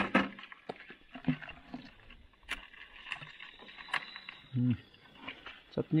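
Live crabs and a hand rummaging in a plastic bucket: scattered sharp clicks, knocks and scrapes of shell on plastic. A short murmur of voice comes a little past four and a half seconds in.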